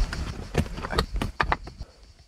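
Stones and objects being lifted and shifted by hand while searching for a hidden geocache: a quick run of about five sharp knocks and scrapes.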